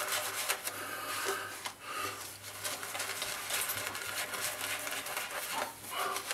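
Horsehair shaving brush working lather over the face, a continuous bristly rubbing.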